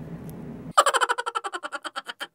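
Intro sound effect for a vlog title card: faint low room noise cuts off abruptly, replaced by a sudden loud hit that breaks into a fast, fading stutter of about fourteen short pulses a second, all treble and no bass.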